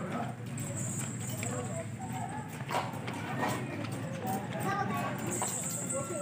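Horse's hooves knocking on the ground a few times as it shifts about on its tether, with voices in the background.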